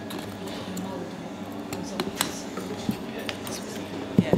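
Metal tools clinking and scraping against freshly cast metal bars as they are dug out of the moulding sand: a handful of sharp clinks scattered through the middle, over a steady low hum.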